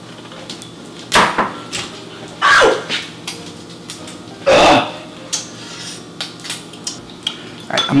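Kitchenware being handled: pans and dishes clattering, with three loud clanks about one, two and a half, and four and a half seconds in, and lighter knocks between.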